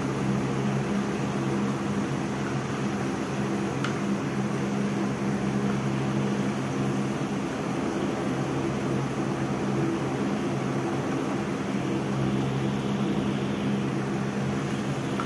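Steady low machine hum, several low tones over an even hiss, with a single faint click about four seconds in.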